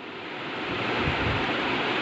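A rushing noise of air on the microphone that grows slowly louder, with a low rumble about the middle.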